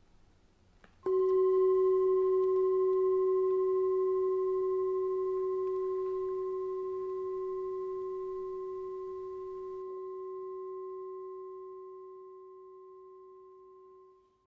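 A singing bowl struck once about a second in, ringing with a clear low tone and fainter higher overtones that fade slowly over the next dozen seconds.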